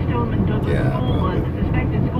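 Steady low rumble of a car's engine and tyres heard from inside the cabin while driving, with a voice talking over it.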